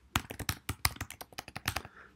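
Typing on a computer keyboard: a rapid, irregular run of key clicks.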